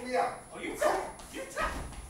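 Short, strained shouts and grunts from two men struggling hand to hand, with low thuds of feet on a wooden stage floor near the end.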